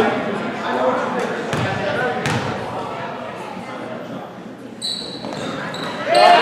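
A basketball bouncing on a hardwood gym floor a few times, with voices echoing in the hall, then a referee's whistle blown near the end.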